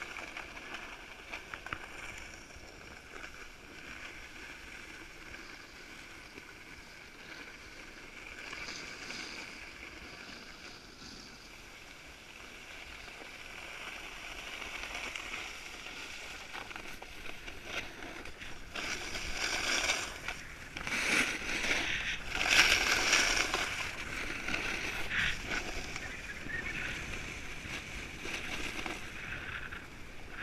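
Snowboard sliding over groomed snow, a steady scraping hiss that grows louder in the second half with several harsher scrapes.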